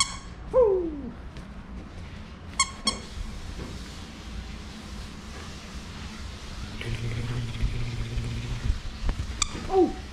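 Basenji making play noises while tugging on a plush toy. There is a short falling whine about half a second in and a sharp high squeak near three seconds. A low steady growl lasts nearly two seconds around seven seconds in, and another falling cry comes near the end.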